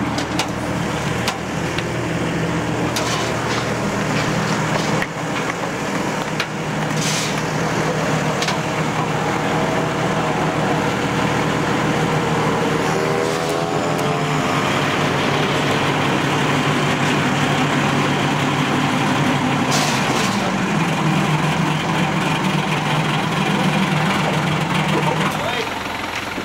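Truck engine running steadily under the load of a festival float, its note stepping up about twenty seconds in, with a brief wavering whine around the middle, over crowd chatter.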